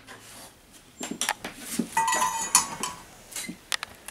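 A hot enameling kiln's door is pulled open and a steel firing fork goes in to lift out a piece on its metal stilt: metal clinks and knocks, with a brief scraping squeal about two seconds in.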